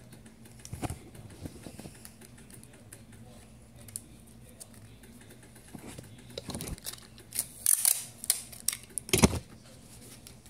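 Scattered clicks and rustles of handling craft materials, such as paper, cardboard and tape, with a cluster of louder scraping, crinkling noises near the end.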